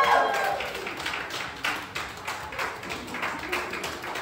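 Audience applauding: a group of people clapping irregularly throughout.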